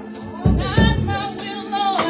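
Gospel worship singing, with two deep low thumps about half a second in.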